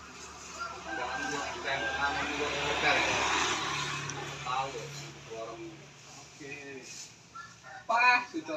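Indistinct voices talking. A motor vehicle passes by on the road, its noise swelling and then fading between about one and five seconds in.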